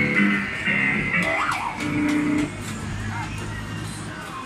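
Guitar-rock music playing from the Easyrider Simulator motorcycle kiddie ride's speaker, dropping quieter about two and a half seconds in as the ride comes to an end.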